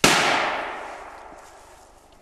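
A single gunshot cracks sharply and echoes, dying away over about a second and a half. It is the shot fired to test whether a dog is gun-shy.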